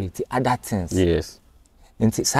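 Speech only: a man talking for about a second, then a short pause.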